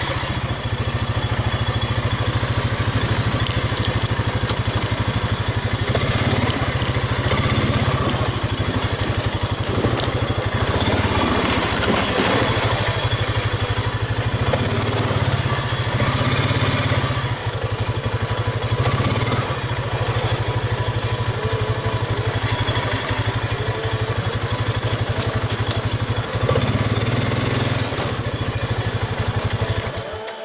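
ATV engine running steadily at low revs, close to the microphone, with no big revs or pauses.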